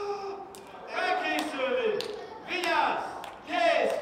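Young children's voices calling out, rising and falling in pitch, with a few sharp knocks in between.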